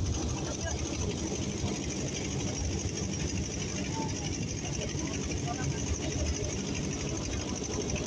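Engine of a river passenger boat running steadily as the boat moves along, a fast low rumble with a steady hiss above it.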